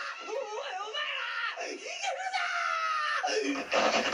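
An anime character's voice screaming and wailing in Japanese, the pitch wavering up and down, with a long drawn-out cry in the second half.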